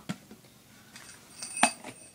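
A red-capped plastic tumbler being handled: a few faint knocks, then one sharp click with a brief ring about one and a half seconds in, as of its cap.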